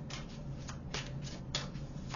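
A deck of oracle cards being shuffled by hand: a run of quick, irregular card swishes and slaps, the sharpest about a second and a half in, over a steady low hum.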